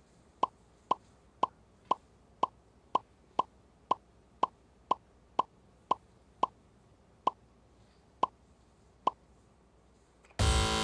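A game-show sound effect: a short plopping blip repeated about twice a second, one for each letter revealed on the quiz board, spacing out near the end.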